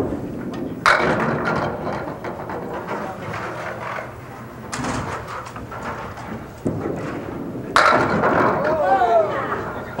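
Candlepin bowling: sharp wooden knocks and clatter from the lanes, with a sudden loud crash of candlepins being knocked down near the end, the loudest sound, followed by onlookers' voices.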